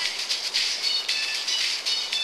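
Shortwave radio receiver giving out hissing static, chopped on and off several times a second, with a few thin whistling tones that step and slide in pitch: interference and signal tones heard between stations.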